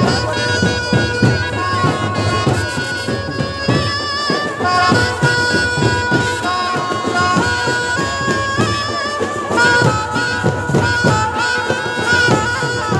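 Traditional procession music: a wind-instrument melody over a steady held drone, with quick, regular drum beats.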